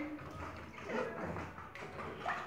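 Hands stirring and sloshing water and paper pulp in a plastic tub.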